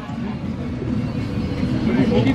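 Low rumble with faint background voices talking, with no single clear sound standing out.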